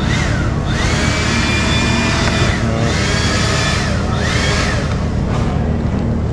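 An electric motor whining up to speed, running for a second or two and winding down, several times in a row, over a steady low hum.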